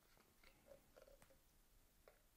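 Near silence: room tone with a few faint clicks, the small handling sounds of a plastic bottle being tipped to pour liquid into a plastic mixing cup.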